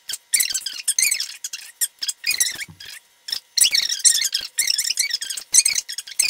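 Long hair rustling and crackling in quick, irregular bursts as strands are crossed and pulled by hand into a French braid.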